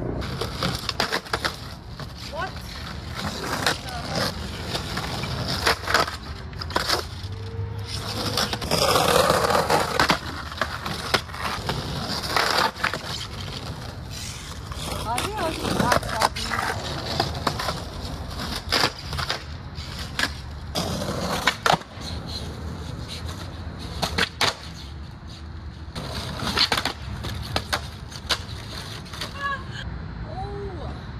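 Skateboard wheels rolling on concrete, broken again and again by sharp clacks and impacts of the board popping, hitting the curb and landing, ending in a fall onto the pavement near the end.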